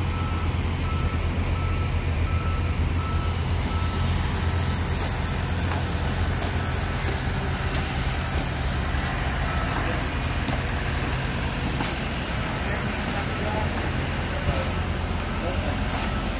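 Heavy diesel machinery engine running with a steady low hum, while a high-pitched motion alarm beeps about twice a second for the first half.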